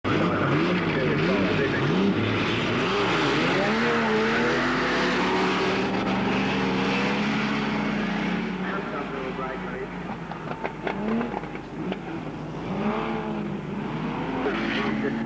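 Engines of several dirt-track race cars running hard as the pack races, their pitch rising and falling as they accelerate and lift. The sound is loudest in the first half and drops somewhat after about eight seconds.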